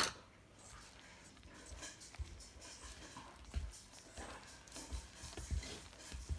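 Hand mixing flour in a metal bowl: faint irregular rustling with several soft low thumps.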